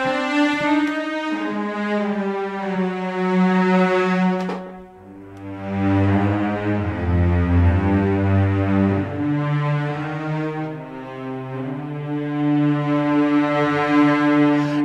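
Spitfire Audio Abbey Road Orchestra Cellos sample library, Performance Legato (Extended) patch, played from a keyboard: a slow line of sustained cello notes joined one to the next, dipping briefly about five seconds in and then moving lower.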